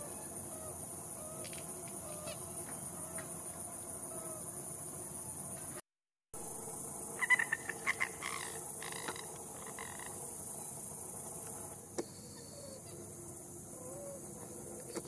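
Swamp ambience: a steady high-pitched insect drone with frogs calling beneath it. After a brief break about six seconds in comes a quick run of sharp, loud calls lasting a couple of seconds.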